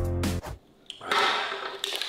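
Background music with a heavy bass beat that cuts off abruptly; after a short pause and a click, a man lets out a long breathy exhale after draining a can of Coke.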